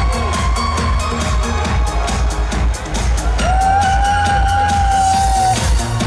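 Live disco polo music played loud through an arena PA: a steady electronic dance beat with heavy pulsing bass and synth. A single long high note is held from about three and a half to five and a half seconds in.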